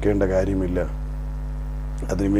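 Steady electrical mains hum, a low drone with a few even overtones, running under a man's voice that stops about a second in and leaves the hum on its own.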